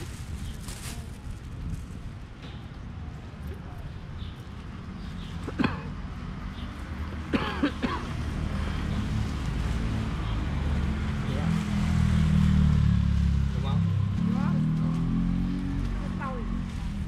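Outdoor street-market din with background chatter; a motor vehicle engine runs close by, its low hum growing louder in the second half. Two sharp knocks come about a third and halfway through.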